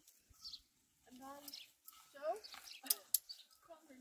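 Mostly quiet talk, with a couple of sharp clicks about three seconds in from the rope and fittings of a hanging chair being fastened to a tree branch.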